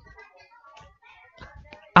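A short pause in a man's speech, filled only with faint, indistinct room sounds; his voice starts again just before the end.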